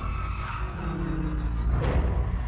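Film action soundtrack: a motorcycle skidding as it slides on its side along the road, with engine noise and music underneath.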